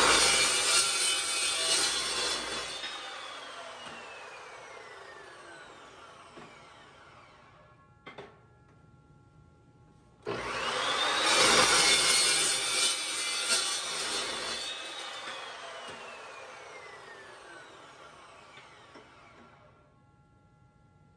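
Evolution metal-cutting chop saw cutting through steel pipe twice. Each time the blade bites through the pipe, and then the motor's whine falls slowly away over several seconds as the blade coasts down. A short clack comes about eight seconds in, between the two cuts.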